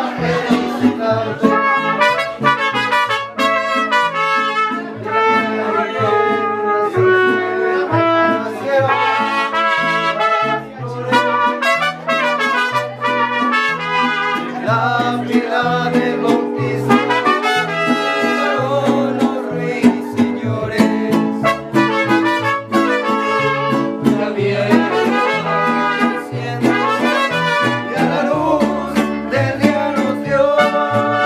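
Mariachi band playing an instrumental passage, trumpets carrying the melody over a low bass line that steps from note to note.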